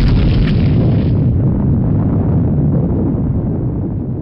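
Explosion sound effect in an animated logo intro: a loud, deep boom whose hiss drops away about a second in, the low end slowly fading out.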